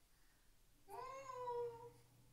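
A young girl singing one high held note, about a second long, that slides down slightly and then holds steady.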